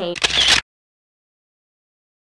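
Camera shutter click sound effect, a single short snap of about half a second near the start.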